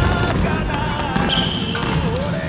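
Basketball dribbled hard on a gym's hardwood floor in quick repeated bounces during a one-on-one, with a sneaker squeak about one and a half seconds in.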